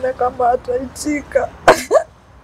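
A woman speaking while crying, her voice broken and halting, with a loud sob near the end.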